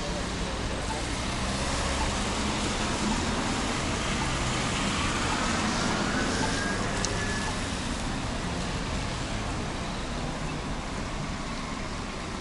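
City street traffic on wet pavement: a steady wash of road noise from passing cars. A faint whine rises in pitch over a few seconds in the middle.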